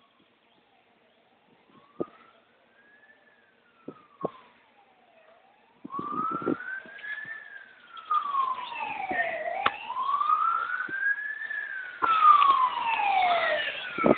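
Fire engine sirens wailing, the pitch sweeping slowly up and down about every four seconds. They are faint at first and grow much louder about halfway through as they approach, with a second siren joining near the end.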